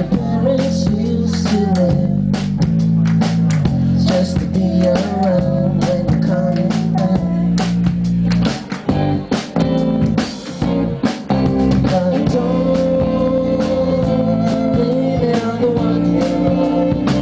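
Indie pop band playing live: electric guitar, drum kit and violin in a full, steady band sound. The sound thins out in a few short breaks about halfway through, then the full band comes back in.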